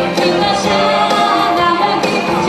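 A woman singing a cha-cha number into a microphone over amplified backing music, steady and loud.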